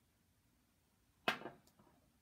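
Quiet room tone, then about a second and a quarter in, one short, sharp sniff through the nose as a person smells perfume just applied to her wrist.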